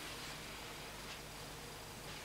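Faint steady hiss of room tone with no distinct sound.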